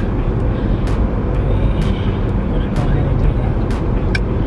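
Car cabin noise while driving: a steady low rumble of road and engine, with a few sharp ticks scattered through it.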